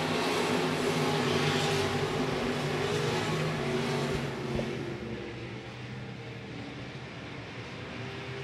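A pack of IMCA stock cars' V8 engines running hard under acceleration on a dirt oval, pulling away on a green-flag restart. The sound is loud at first and fades about halfway through as the field moves off down the straight.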